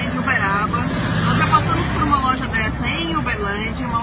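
Indistinct voices over a steady low outdoor rumble of vehicle noise, as in an amateur street recording.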